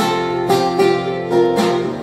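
Acoustic guitar strumming chords in a steady rhythm, a strum roughly every half second.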